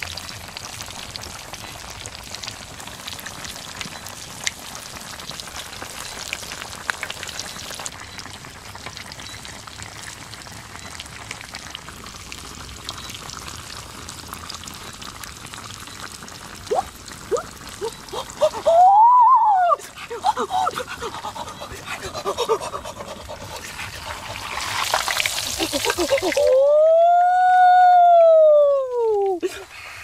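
Pork belly frying in hot oil in a wok: a steady sizzle with fine crackles. About two-thirds of the way through, a voice makes short sliding sounds, and near the end one long drawn-out vocal cry rises and then falls in pitch.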